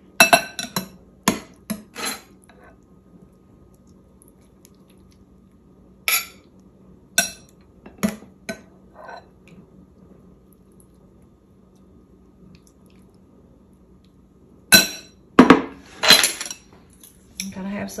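Metal serving spoon clinking and scraping against a ceramic dinner plate and a glass serving bowl as turnips and greens are dished up. The clinks come in three short bunches a few seconds apart.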